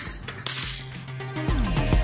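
A short, light metallic clink about half a second in as metal computer hardware is handled, over steady background music.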